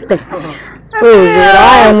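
A person's voice crying out loudly in one long, drawn-out call with a wavering pitch, starting about a second in.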